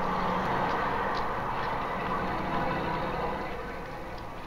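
Steady background street noise, a hum of traffic, easing off near the end.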